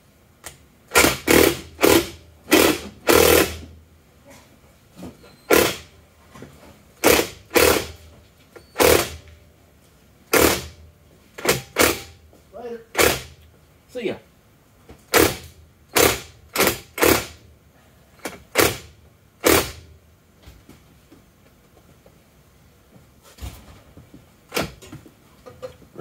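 Impact wrench fired in about twenty short bursts, each a brief rattle, turning a scissor jack's screw to tilt a transfer case on the bench to a target angle; the bursts stop about twenty seconds in.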